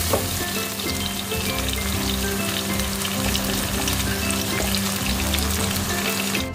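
Ground chili, garlic and shallot paste sizzling steadily as it is sautéed in hot oil in a wok, stirred with a silicone spatula that adds small light scrapes and ticks.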